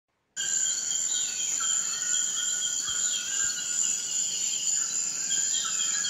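Forest ambience starting a moment in: a steady high-pitched insect drone, with a bird repeating a short descending whistle every second or two.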